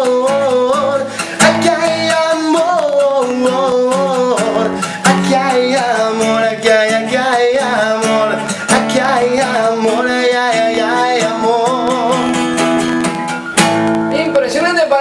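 Acoustic guitar strummed in steady chords while a man sings a romantic cumbia-style song over it, live with no backing band.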